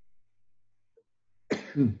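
A person clears their throat with one short, harsh cough about one and a half seconds in, lasting about half a second.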